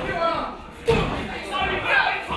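One sharp impact in the wrestling ring about a second in, a blow or a body landing, over a small crowd's shouting voices.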